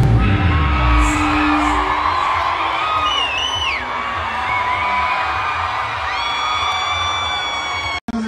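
Live concert crowd cheering and screaming over the band's pagode music, the heavy bass dropping away about a second in. High gliding screams ring out through the cheering, and a steady high note holds from about six seconds.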